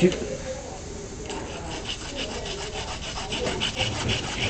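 Small pruning hand saw cutting into a live red loropetalum branch, starting about a second in with quick, even strokes at about three a second. The cut is a shallow notch so the thick branch can be bent and wired down without snapping.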